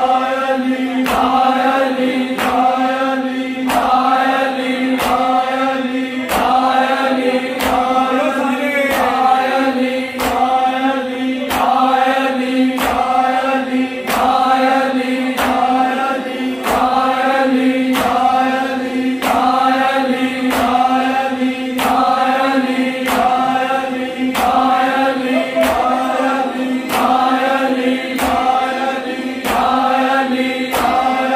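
Men's voices chanting a Shia noha in rhythm over a steady held low note, with a sharp slap of hands striking bare chests (matam) about once a second.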